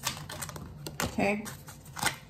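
Tarot cards being shuffled, a run of quick papery clicks and snaps. About a second in, a brief wordless vocal sound, the loudest thing here.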